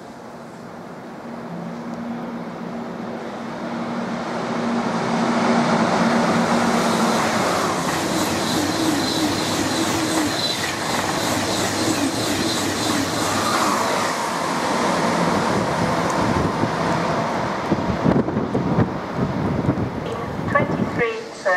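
Eurostar Class 373 (e300) high-speed electric train passing through a station without stopping. It grows louder over the first six seconds as it approaches, then holds a steady loud rush as the coaches go by, with a few sharp knocks near the end.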